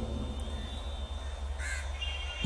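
A single short, faint bird call about three quarters of the way in, over a steady low hum.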